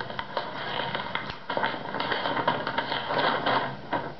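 Paper rustling and tearing as an envelope is opened by hand: a run of quick crinkles and small rips.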